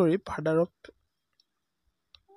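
A voice speaking for under a second, then one faint click, then silence.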